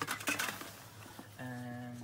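Aluminium drink cans knocking and clinking together in a plastic shopping basket, several quick knocks in the first half second. Later a steady low hum is held for under a second.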